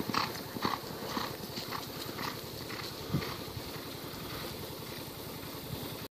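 Hoofbeats of a horse galloping on soft arena dirt, loud at first and fading as the horse runs off into the distance. There is one louder thud about three seconds in.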